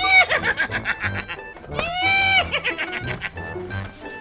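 Two high whinny cries, each rising and then falling and lasting about half a second, about two seconds apart: a person neighing like a horse while riding a toy hobby horse. Light background music plays under them.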